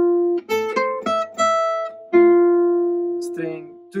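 Gypsy jazz guitar playing single picked notes of a lick slowly. A ringing note gives way to a quick run of about four notes, and then one long note rings out from about two seconds in and slowly fades.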